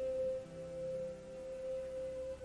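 Soft meditation background music: a single sustained tone held steady, joined by a lower tone about half a second in.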